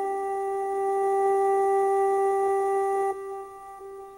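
Electronic keyboard (synthesizer) holding one long, steady note in slow meditative music; the note drops sharply in volume about three seconds in and lingers faintly.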